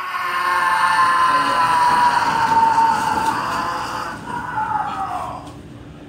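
A man's long, unbroken yell as a Taser's current runs through him, held for about five seconds with its pitch slowly falling, then fading out near the end.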